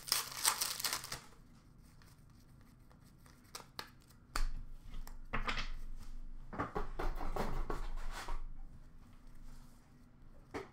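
Hockey card pack wrappers being torn open and crinkled by hand, with cards being handled. There is a burst of tearing and crinkling at the start, then another stretch of crinkling from about four and a half to eight and a half seconds in.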